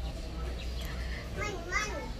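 A small child's voice calling out faintly twice near the end, over a low steady background.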